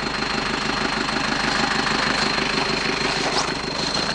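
A vehicle engine idling steadily with an even low throb, a thin steady high whine running above it.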